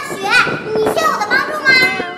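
Speech only: a high-pitched woman's voice speaking Mandarin.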